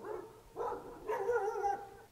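A dog howling: a long held howl dies away at the start, then a second wavering howl rises and falls away from about half a second in until near the end.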